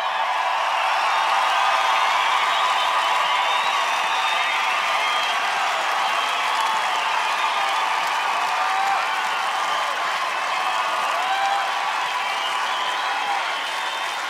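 A large concert crowd cheering and clapping at a steady level, with whoops and shouts rising and falling through it.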